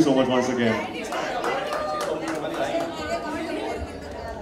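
A man ends with "thank you so much" into a microphone, then several people chatter over one another.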